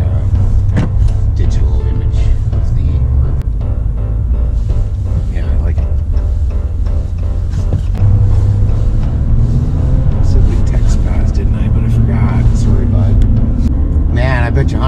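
Inside the cab of a 2021 Ram Rebel EcoDiesel pickup on the move: a steady, loud low rumble of the truck on the road, with music playing along.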